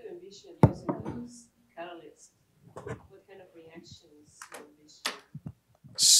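Faint, distant speech, away from the microphone, with one sharp knock about two-thirds of a second in.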